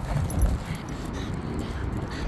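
Dogs panting after play, over a steady low rumble.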